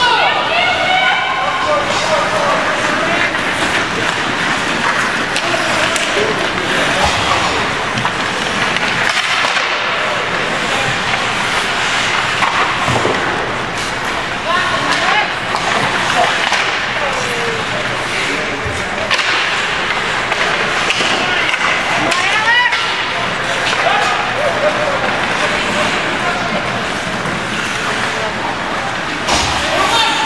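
Ice hockey play in an indoor rink: skates scraping the ice and sticks and puck clacking, with indistinct spectator voices and shouts throughout.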